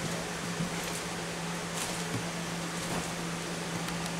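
Steady room background: a constant low hum with hiss, broken by a few faint clicks and rustles as someone moves close to the microphone.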